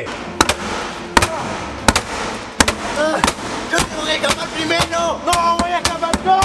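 Repeated hammer blows against a wall of bamboo canes, hard single strikes about two a second; the canes do not give way.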